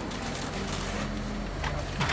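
Outdoor street background: a steady low rumble, like a nearby engine or traffic, with faint voices.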